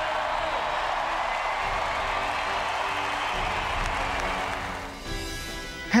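Arena crowd cheering and applauding over background music. The crowd noise cuts out about five seconds in, leaving the music alone.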